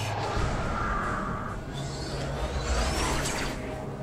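Cartoon sci-fi sound effects of a spaceship's engines: a steady deep rumble, with a hum in the first second or so and a faint rising whine about three seconds in.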